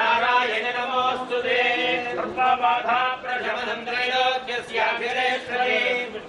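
A Hindu temple priest chanting mantras, one man's voice reciting without pause.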